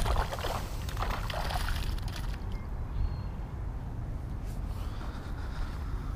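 Wind rumbling steadily on a body-worn camera's microphone, with brief rustling from the angler's handling in the first two seconds.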